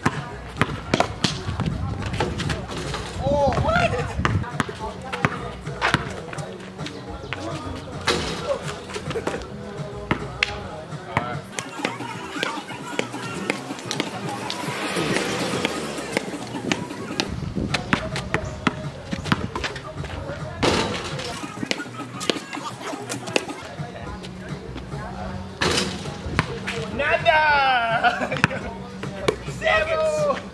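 Basketball bouncing on an asphalt street over background music. A car passes about halfway through, its noise swelling and fading.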